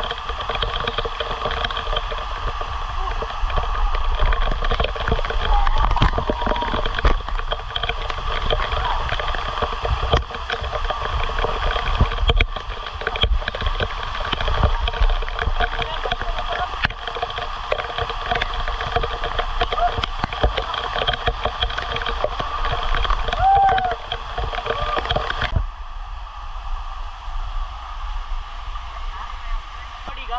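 Waterfall spray pouring onto a camera held in the falls: a dense, loud rush of falling water with drops striking the camera. The sound thins out abruptly near the end.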